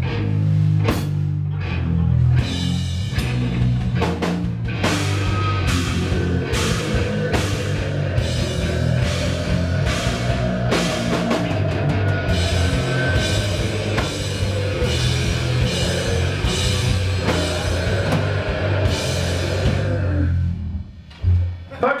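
Live rock band playing the final section of a song at full volume: distorted electric guitar over a drum kit with repeated heavy cymbal and drum hits. The music cuts off about twenty seconds in.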